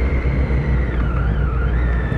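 Motorcycle riding in traffic, heard from the rider's camera: a steady mix of engine and strong low wind rumble on the microphone, with a faint whine that dips and rises in pitch about halfway through.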